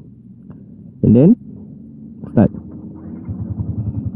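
Yamaha Y16ZR's single-cylinder VVA engine started on the button: it catches about three seconds in and runs on in an even, quick pulsing idle.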